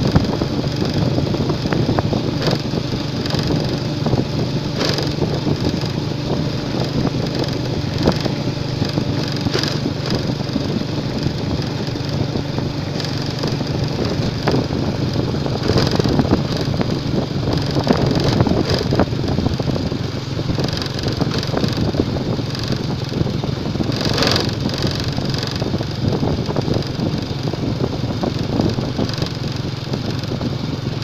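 Small motorcycle engine running at a steady cruise on a rough dirt and gravel road, with tyre and gravel noise and a few bumps from the uneven surface.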